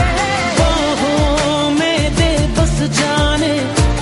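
Pop song in a Bollywood style: a vocal melody over a steady drum beat and bass.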